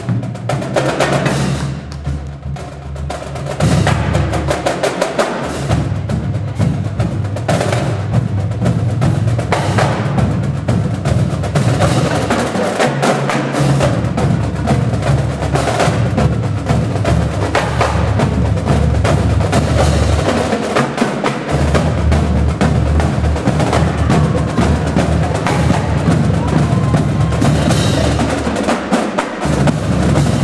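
A marching drumline of snare drums, tenor drums and tuned bass drums playing a loud, fast percussion piece, the bass drums moving between different low pitches.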